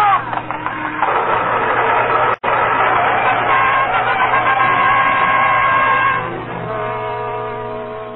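Radio-drama sound effect of a wagon overturning, a dense crashing noise, under a dramatic music sting whose held chord thins out and fades over the last two seconds, with a brief break about two and a half seconds in. Heard through the narrow, muffled band of a 1940s broadcast recording.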